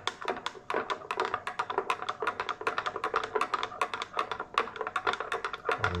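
Metal spoon stirring a hot Milo drink in a glass mug, clinking against the glass in a quick, steady run of taps, several a second.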